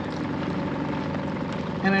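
Kuppet portable washing machine running on its rinse cycle: a steady motor hum with the tub turning.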